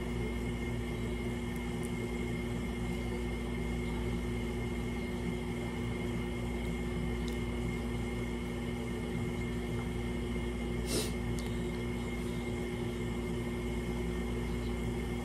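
A steady hum with several constant tones, like a running fan or appliance, and one short click about eleven seconds in.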